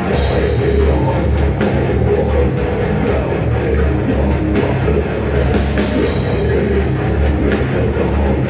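Death metal band playing live: distorted electric guitars over a drum kit, loud and dense, with the drums keeping a steady driving beat.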